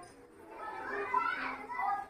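Children's voices talking and chattering quietly in the background, starting about half a second in.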